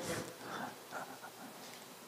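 A few faint, soft breaths close to a handheld microphone.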